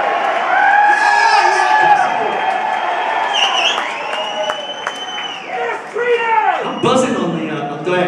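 Concert audience cheering, with several people shouting and whooping in long, drawn-out calls that overlap one another.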